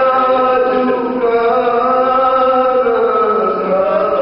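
Male voice singing a marsiya, an Urdu elegy, in long held notes. About three seconds in, the pitch slides down to a lower note.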